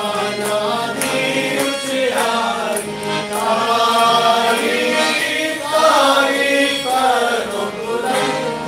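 A Christian worship song sung by male voices with harmonium accompaniment, the harmonium's steady tones under the melody.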